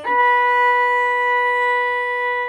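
Violin bowed on the A string, sounding one long steady note held flat, without vibrato.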